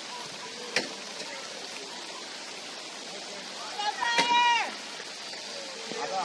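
Steady hiss of rain over a soccer pitch, with a sharp knock just under a second in. About four seconds in, a loud, high-pitched shout is held for about half a second and falls away at the end.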